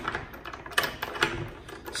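A few irregular light clicks and knocks of hands handling a hydrofoil mast and its adapter hardware in a track-mount plate on a paddleboard.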